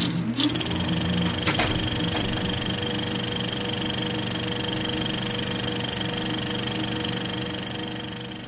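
Film projector sound effect: the projector motor spins up over the first half second, then runs with a steady whirr and rattle, with a few clicks in the first couple of seconds.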